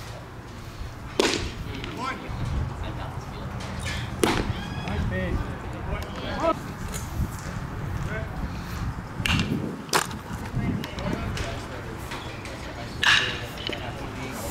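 A baseball popping into the catcher's leather mitt about a second after the pitcher's delivery, followed by two more sharp cracks of the ball meeting leather or bat, with faint voices around the field.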